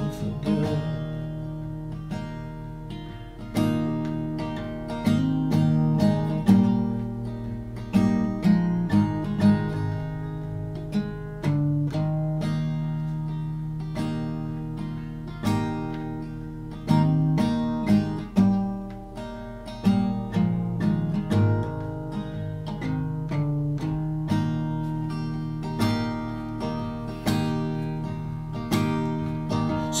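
Solo acoustic guitar played in an instrumental break, chords strummed and picked in a steady rhythm with no voice.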